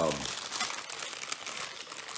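Paper wrapper of a fast-food taco crinkling continuously as it is unfolded by hand.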